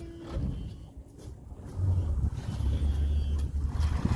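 Pontoon boat's outboard motor running at a low idle: a steady low rumble that comes in about two seconds in.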